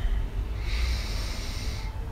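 A man's slow, deliberate diaphragmatic breath through the nose: a soft hiss that starts about half a second in and lasts about a second and a half. A low steady rumble runs underneath.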